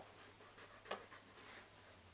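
Felt-tip marker drawing a zigzag on paper: faint, short scratchy strokes, one slightly louder about a second in.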